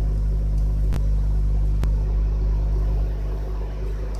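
A steady low hum of background machinery or electrical noise, with two or three faint clicks about a second apart.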